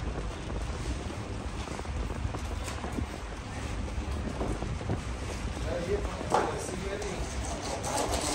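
Steady low rumbling background noise, with faint voices in the background and a single sharp knock a little after six seconds in.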